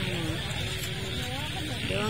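Voices of a crowd talking over one another, over a steady low rumble.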